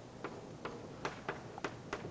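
Chalk tapping on a blackboard while a diagram is drawn: a series of short sharp clicks, about six in two seconds.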